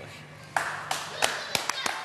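Several people clapping, starting about half a second in, with voices beneath.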